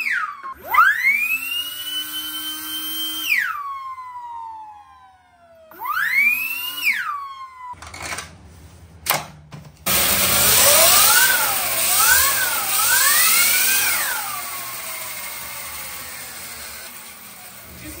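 Upgraded Sur-Ron electric dirt bike motor spinning the raised rear wheel with no load. It makes a high whine that climbs in pitch with each twist of the throttle and glides down as the wheel coasts. There is one long held rev, a short one, then a run of quick blips over a louder rushing hiss, ending in a long wind-down.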